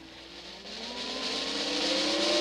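Intro sound effect: an engine-like pitched sound with several overtones, climbing slowly and steadily in pitch and growing louder.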